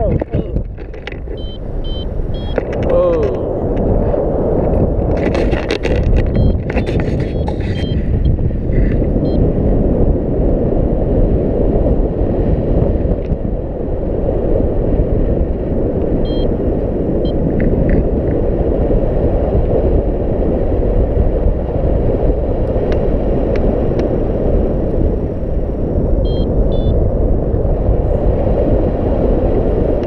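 Airflow rushing over the microphone of a camera carried by a paraglider in flight: a loud, steady low rumble. A few times, runs of short high beeps from the paragliding variometer.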